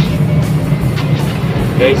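Loud, steady low rumble of a road vehicle's engine passing close by, over background music; a man starts talking near the end.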